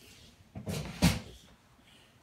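A short scraping noise, then a single sharp knock on a hard surface about a second in.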